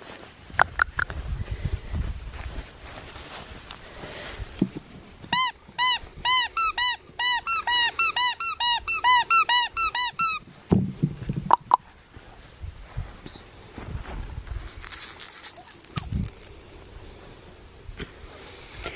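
Rubber squeaky dog toy squeezed rapidly: about twenty rising-and-falling squeaks at roughly four a second, starting about five seconds in and lasting about five seconds. A few soft clicks and a low rumble come before and after.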